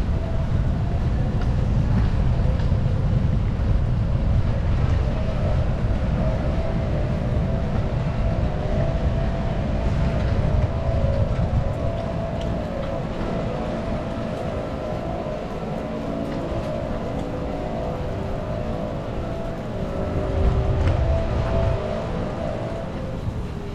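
Wind buffeting the microphone in a low, rumbling rush, easing off in the middle and gusting up again near the end. Faint steady tones sit underneath from about a quarter of the way in.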